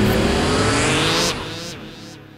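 Electronic logo sting: a rising whoosh with rising tones over music, cutting off sharply just past halfway and fading out.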